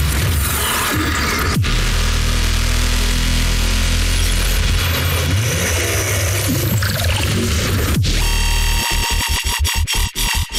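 Dubstep played in a DJ mix: heavy sub-bass under distorted synth bass that glides up and down in pitch, chopped into a fast stutter near the end.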